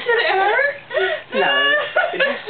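A woman's high, wavering squealing laughter in three breaths, the longest and loudest squeal near the end.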